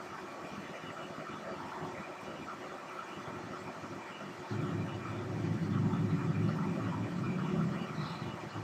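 Faint steady background noise, joined about halfway through by a louder low rumble that holds on.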